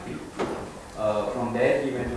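A man speaking, with a pause about half a second in that holds one short, sharp knock; the talking resumes about a second in.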